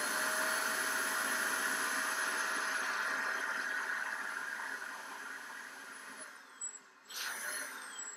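DataVac electric computer-duster blower running, a steady rush of air with a thin motor whine as it blows a jet upward. It fades away over the last few seconds, with one short burst of air again near the end.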